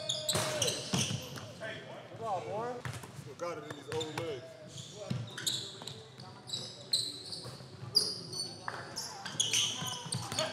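Basketballs bouncing on a hardwood gym floor, with sneakers squeaking and players calling out indistinctly in a large gym.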